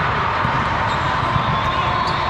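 Steady din of a large hall full of volleyball games: frequent thumps of volleyballs being hit and bouncing, over a wash of many distant voices.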